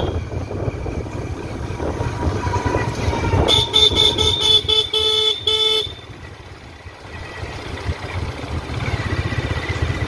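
Engine and road rumble of a moving motor vehicle, with a vehicle horn sounding in a quick series of short honks for about two seconds past the middle. The rumble drops away briefly just after that, then returns.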